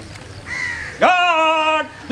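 A man's shouted drill command to the police squad, one long drawn-out call that jumps up in pitch, is held for nearly a second and cuts off sharply.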